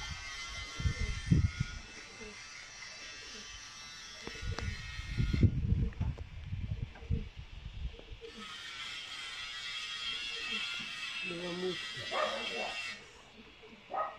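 A small motor's steady high buzz runs for about five seconds, stops for about three, then runs again for about five seconds.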